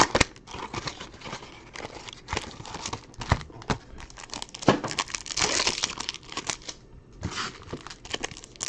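Foil wrappers of 2020 Topps Finest baseball card packs crinkling and tearing in irregular bursts as the packs are torn open, with sharp crackles throughout and a denser stretch of crinkling about five seconds in.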